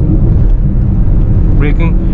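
Steady low rumble of a Renault Scala sedan's cabin while cruising in fourth gear at about 100 km/h: engine, tyre and road noise heard from inside the car. A man's voice starts again about one and a half seconds in.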